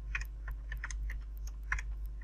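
Typing on a computer keyboard: about eight quick, irregular keystrokes, over a steady low hum.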